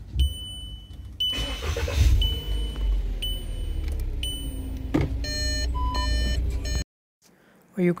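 Volkswagen Jetta's interior with the engine rumbling low and a high electronic beep repeating about once a second. About five seconds in there is a click from the gear selector, then the park assist buzzer sounds a run of short beeps. The newly replaced park assist module and speaker are working again. The sound cuts off abruptly shortly before the end.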